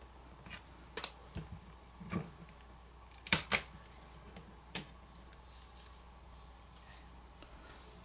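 Light clicks and taps of fingers working a smartphone battery loose from its adhesive and lifting it out of the phone's frame: about six short, sharp sounds in the first five seconds, then quiet handling.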